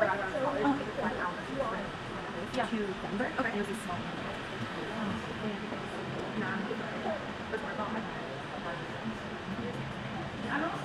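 People talking indistinctly at a distance from the microphone, with no clear words and no other distinct sound.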